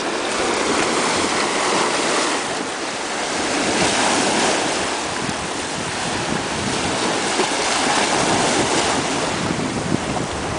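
Shallow sea water washing and lapping over shoreline rocks, a steady surging hiss of surf, with wind on the microphone.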